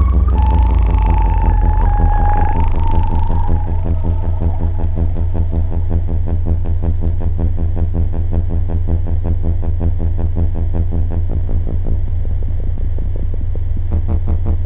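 Modular synthesizer sound: samples fed through the Synton Fenix 2's phaser, modulated and in feedback mode, give a low drone with many overtones that pulses rapidly. A higher whistling tone wavers in pitch over it for the first few seconds, then fades out.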